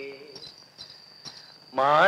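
Male folk singing in Malayalam: a held note fades out, leaving a short pause with a faint steady high-pitched tone, and the next sung phrase begins near the end.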